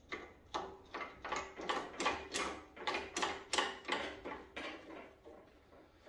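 Hand knob and blade-guide hardware on a 4x6 horizontal metal-cutting bandsaw being handled and turned by hand: a run of irregular metal clicks and clatters, two or three a second, dying away near the end.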